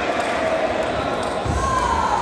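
Table tennis ball being struck and bouncing on the table in a rally, over voices in a large sports hall, with a low handling rumble near the end.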